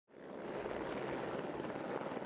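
Helicopter rotor and engine noise, a steady drone that fades in at the very start.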